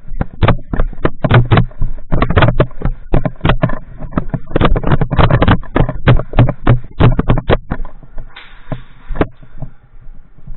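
Loud, rapid, irregular sharp cracks and knocks, several a second, thinning out about three-quarters of the way through, with a short hiss near the end.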